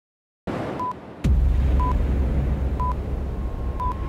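Short steady beeps of a video countdown leader, one a second, over a loud steady low rumble and hiss that comes in with a click about a second in.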